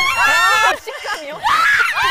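Young women's high-pitched startled shrieks: one in the first moment and a second near the end. The member is recoiling from something unseen she has touched in a feel box.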